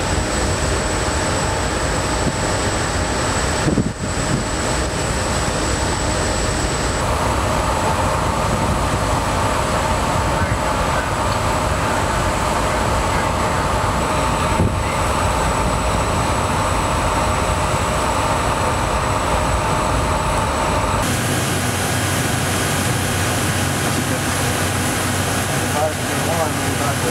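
Steady wind and machinery rumble aboard a guided-missile destroyer underway, its character shifting abruptly at several points. In the last few seconds the deep rumble falls away, leaving a steadier hum of ventilation and equipment.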